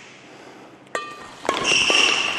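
Badminton doubles rally: a sharp racket hit on the shuttlecock with a brief ring about a second in, then several quick hits and high-pitched squeaks of court shoes on the floor in the second half.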